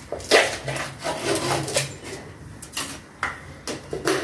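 Kitchen clatter: a string of short, light knocks and scrapes as dishes and utensils are handled on a counter.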